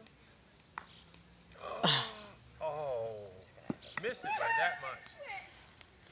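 Indistinct voices of people talking and calling out at a distance, in a few short phrases, with a couple of brief sharp knocks between them.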